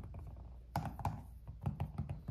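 Quartz rocks being handled and picked up off a plastic LED light pad: an irregular run of light clicks and knocks.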